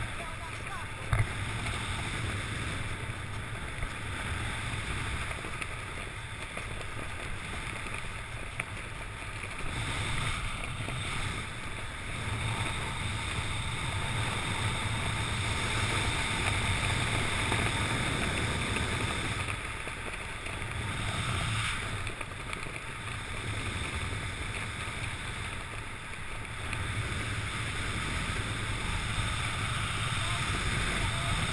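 Steady wind rushing over a helmet camera's microphone during a parachute descent under an open canopy, with one sharp click about a second in.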